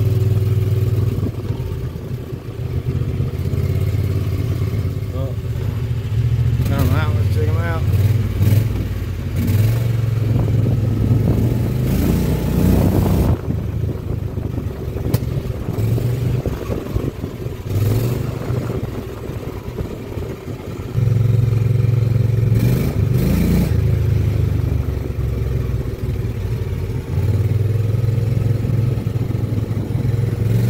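Predator 670 cc V-twin engine in a golf cart, heard from the driver's seat while driving. It runs hard in long stretches and eases off in between as the throttle is opened and closed.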